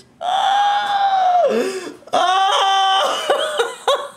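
A man's two long, high yells of excitement, the first sliding down in pitch at its end, followed by a few short laughs near the end: whooping in joy at a big win.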